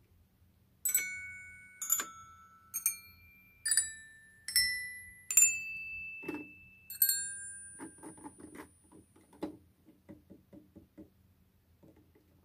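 Metal chime bars of a Mr. Christmas Santa's Musical Toy Chest struck one at a time, about a second apart: seven ringing notes of different pitches, each dying away. After them come soft clicks and taps from the plastic figures being handled.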